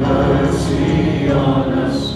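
Live praise-and-worship music: a band playing with several voices singing together.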